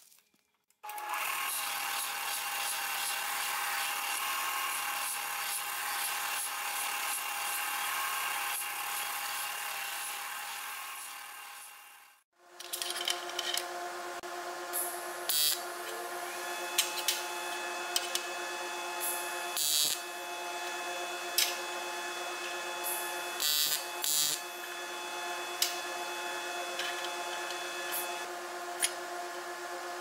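Belt sander running while an aluminium sheet is sanded against its belt. It is switched off and winds down to silence about 12 seconds in. After that comes a steady hum with a strong low tone, with scattered sharp clicks and taps.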